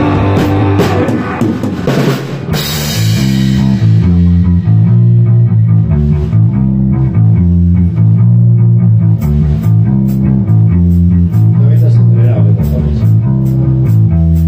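Rock band playing live: electric bass, guitar and drum kit together, ending on a cymbal crash about two and a half seconds in. After the crash the drums drop out and a loud, repeating low bass-and-guitar riff carries on alone. Sharp, regular ticking hits come back in around nine seconds in.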